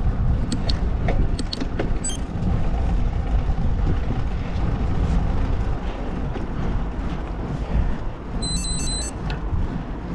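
Steady wind and road noise on the microphone while riding a bicycle. A few sharp clicks come in the first two seconds, and a short run of high electronic beeps sounds about eight and a half seconds in.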